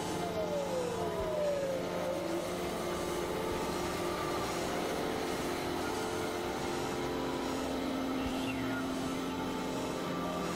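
Dense experimental electronic drone collage: many sustained tones layered over a noisy bed, with falling pitch glides in the first two seconds and a fainter falling glide about eight and a half seconds in.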